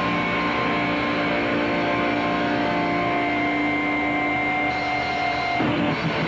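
Distorted electric guitar through an amplifier, holding one chord that drones steadily and then cuts off about five and a half seconds in.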